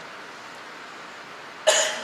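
A man's single short cough about one and a half seconds in, after a low, steady room hiss.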